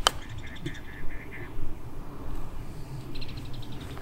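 A golf club clicks against the ball once at the very start in a short chip shot. Birds then chirp in a quick run of short calls, with another brief run about three seconds in.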